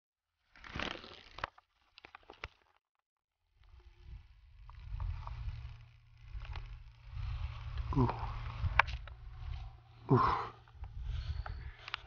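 Wind buffeting the microphone as a low, uneven rumble from about three and a half seconds in, after a short rustle about a second in. Two 'ooh' exclamations come near the end.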